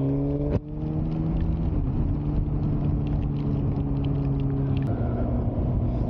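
Suzuki GSX-R 600 K9 sportbike's inline-four engine running steadily at a constant cruising speed. There is a brief dip and a small change in engine pitch about half a second in.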